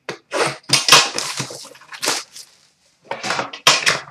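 Plastic shrink wrap on a cardboard trading-card hobby box being slit and torn off, crackling in a series of irregular bursts, then the box opened.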